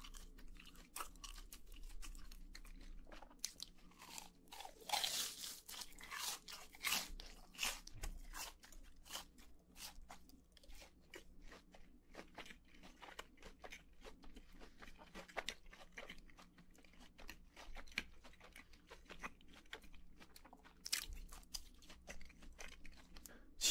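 Close-miked chewing of crisp fried food: a steady stream of small, sharp crunches, with louder bites around five and seven seconds in and again near the end.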